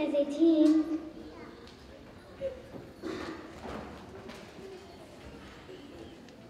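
A young child's amplified voice, the end of a spoken line into a microphone, stopping about a second in. Then a quiet hall with faint scattered voices and rustling.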